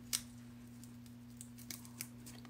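A few faint clicks and light paper sounds of fingertips picking foam adhesive dimensionals off their backing strip, over a steady low hum.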